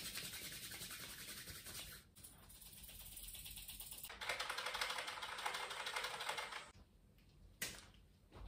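Palms rubbed together quickly, a dense rapid rustle for the first two seconds. After a short dip comes a louder run of fast, close-up handling noise on a small object from about four seconds in to nearly seven, then a single sharp click near the end.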